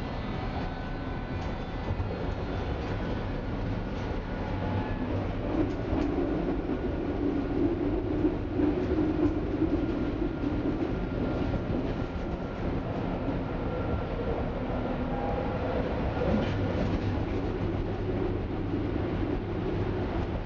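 Inside a Berlin U-Bahn F87 subway car running along the track: a steady rumble of wheels and running gear with occasional faint clicks. A hum grows louder for several seconds in the middle.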